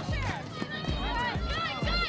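Background music: a song with sung vocals over a steady beat.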